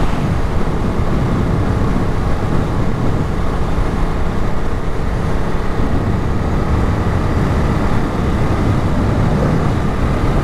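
On-board sound of a 2022 Ducati Monster's 937 cc L-twin engine pulling steadily at highway speed, under a constant rush of wind noise.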